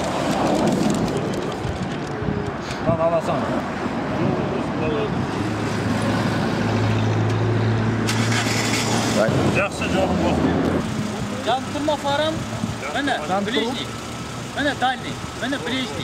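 Road traffic: cars passing on a city street, with a steady low engine hum for a few seconds in the middle, under voices talking.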